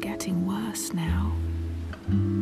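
Music: a lullaby sung softly, almost in a whisper, over gentle sustained instrumental backing.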